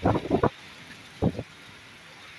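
Heavy rain with a car driving past on the flooded road, its tyres hissing through the water. Short loud noises break in at the very start and again just after a second in.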